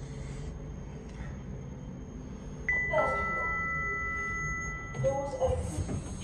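Passenger lift arrival chime: a higher ding about two and a half seconds in, followed straight away by a lower one, both ringing on for about two seconds as the lift reaches the floor.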